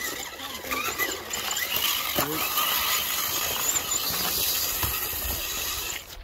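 Small electric RC rock crawler's motor and gears whining in short bursts that rise and fall in pitch as it is throttled over a boulder, with faint voices behind.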